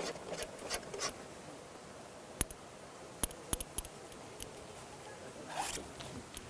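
Paint being worked onto a canvas with thick oil paint: short soft scrapes in the first second and again near the end, and a run of sharp clicks in between.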